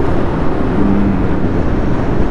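Bajaj Pulsar 150 motorcycle riding at a steady speed: its engine running under steady wind rush on the camera's microphone.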